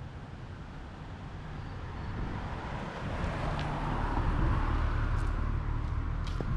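A car driving past on a road, its engine and tyre noise building over a few seconds and then easing slightly near the end.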